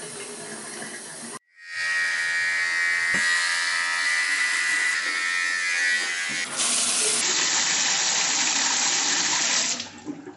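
Shower water running as a steady hiss. It cuts in about a second and a half in after a brief silence, carries a whining tone for the first few seconds, and fades out near the end.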